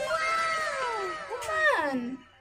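Several drawn-out cat-like meows overlapping, each falling in pitch, starting abruptly with a couple more coming in about halfway.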